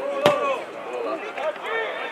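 A football kicked hard in a long pass: one sharp thud about a quarter second in, the loudest sound, with players' voices calling around it.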